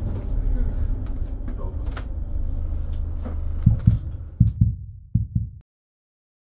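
Mercedes-Benz Sprinter City 45 minibus diesel engine running with a steady low rumble, heard from inside the bus, with a few low thumps in the last couple of seconds. The sound cuts off abruptly shortly before the end.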